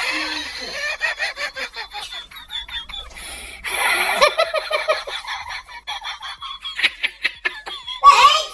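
A person laughing hard in rapid short pulses, several a second, with a brief stretch of voice about four seconds in.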